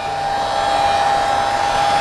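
Electric heat gun running, its fan blowing steadily with a constant whine, held over a fresh epoxy seal coat to pop surface bubbles.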